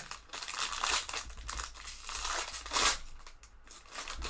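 Foil wrapper of a hockey card pack crinkling as hands tear it open and peel it back from the cards, in a run of crackly bursts, loudest about a second in and just before three seconds.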